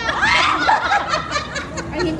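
A group of women laughing together, loudest in the first half second, with a little talk mixed in.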